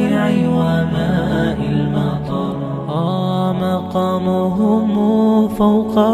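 Background nasheed: a male voice singing in Arabic over a layered, humming vocal drone, with no instruments.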